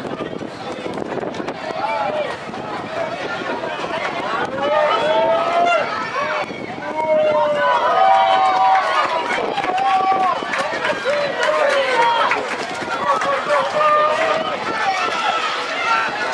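Several voices shouting and calling out at once, high-pitched and excited, growing louder about five seconds in: spectators and young players yelling during a youth football match.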